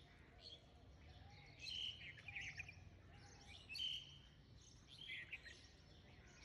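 Faint birds chirping in a few short bursts, over a faint low background hum.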